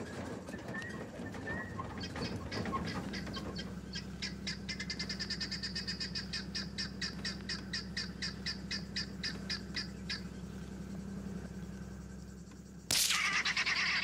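Guinea fowl calling in a rapid run of harsh cackling notes, about six a second, for several seconds over a low steady hum. A sudden, louder burst of noise comes near the end.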